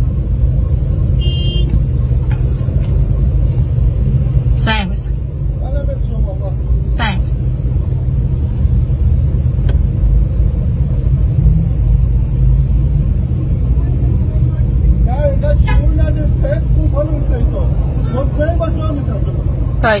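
Steady low rumble of car engines in street traffic, with short exchanges of speech over it: a word or two around five and seven seconds in, and more talk in the last few seconds.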